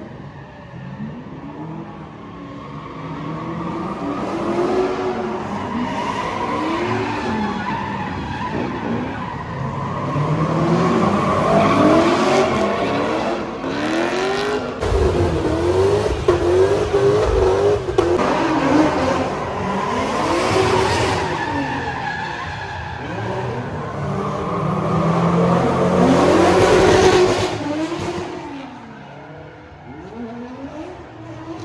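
A drift car's engine revving up and down over and over, its pitch rising and falling about once a second, with the rear tyres screeching as the car slides sideways. The sound swells twice, once around the middle and again near the end, as the car comes past.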